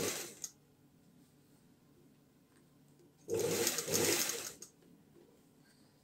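Table-mounted industrial sewing machine stitching in short runs: a brief burst at the very start, then a run of about a second and a half about three seconds in, with quiet between.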